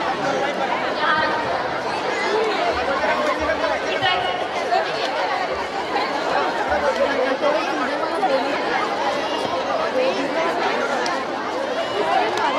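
Crowd chatter: many voices talking at once, steady throughout, with no single voice standing out.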